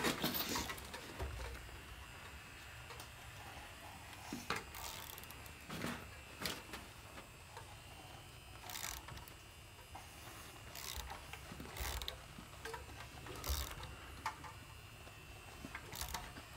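Faint, scattered clicks of a ratchet wrench on the crankshaft pulley bolt of a Honda K24 engine as the engine is turned over by hand.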